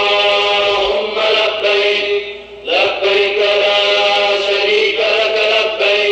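Chanting in long, drawn-out held phrases, with a brief break a little under three seconds in and another starting near the end.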